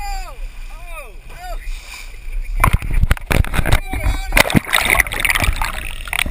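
Water splashing and bubbling against a GoPro camera as it is dipped below the sea surface, a dense run of irregular splashes and rushes starting about two and a half seconds in. Before that, several short high calls that rise and fall in pitch.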